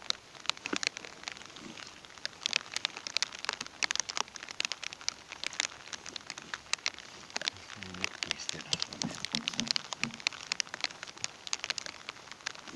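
Rain falling on an inflatable boat and the water around it: a dense, irregular run of sharp drop hits close by.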